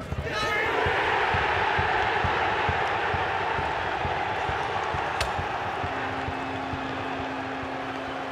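Goal celebration in a football stadium: a shout rising just after the ball goes in, then sustained cheering and shouting that slowly fades.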